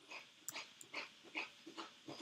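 Faint, quick panting from a dog, about three breaths a second.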